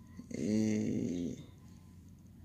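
A man's drawn-out, wordless voiced sound, like a hesitating "euhhh", lasting about a second and wavering in pitch, over a faint low room hum.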